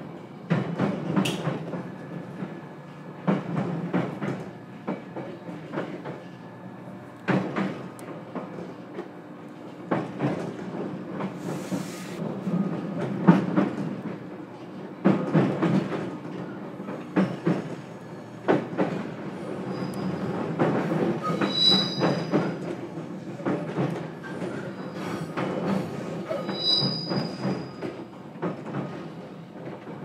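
Running noise inside a JR Kyushu 813 series electric multiple unit, heard from the motor car, as the train rolls into a station: irregular sharp clacks of the wheels over rail joints and pointwork, with a few high-pitched wheel squeals in the second half.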